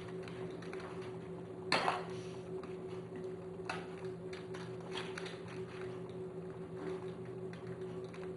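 Soft handling sounds as a spoon spreads cream over biscuits in an aluminium-foil-lined dish: light scrapes and foil crinkles, the loudest a short rustle about two seconds in, with smaller clicks after it. A steady low hum runs underneath.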